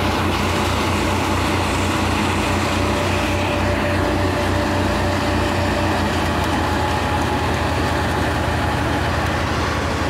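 Tractor-driven Jai Gurudev paddy thresher running steadily under load as wet paddy is fed in: the tractor's diesel engine hums low and even under the spinning threshing drum, and straw is blown out through the chute.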